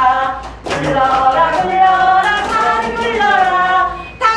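A woman sings a simple, repetitive children's-song tune, with held notes and a short break about half a second in. It is a massage action song with the lyrics changed to commands such as 'knead, knead, knead the legs'.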